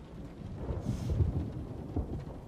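Thunder rumbling low, swelling to its loudest about a second in, over a faint hiss of rain.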